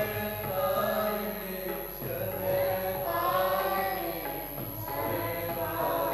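Voices singing a devotional kirtan to Radha in long, held melodic lines, with musical accompaniment.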